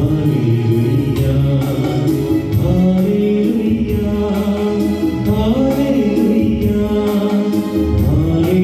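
A song: a singer's voice over keyboard accompaniment with a steady beat.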